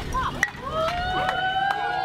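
Several people's voices calling out, with one long drawn-out call starting about half a second in.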